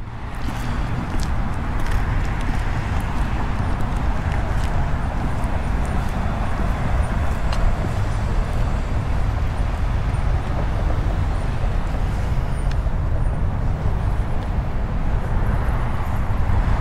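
Steady road-traffic noise from a busy street, an even wash of sound over a strong low rumble.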